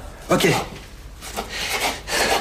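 A kitchen knife chopping and scraping on a wooden cutting board, a few uneven strokes in the second half after a short spoken word.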